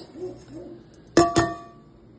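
Two quick clanks of a utensil striking cookware, about a fifth of a second apart, each leaving a brief metallic ring.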